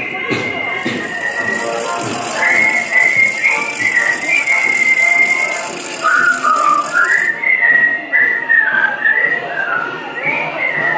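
A tune whistled over the noise of a marching crowd, one melody sliding from note to note. A steady high hiss runs under it from about a second in until about seven seconds.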